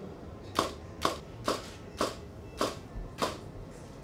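Nikon DSLR shutter firing in a run of six sharp clicks, about two a second, as a photo session goes on.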